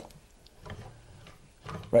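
A few faint, light clicks of a steel threading die being handled on the end of a guitar truss rod, metal touching metal. A man starts speaking near the end.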